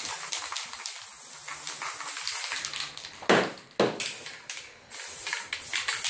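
Aerosol spray can of clear coat hissing in repeated bursts as it is sprayed over a painting, with two louder blasts a little past halfway.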